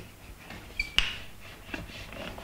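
Wooden rolling pin rolling out a block of puff pastry on a floured board: a soft rolling sound with one sharp knock about halfway through and a few lighter taps near the end.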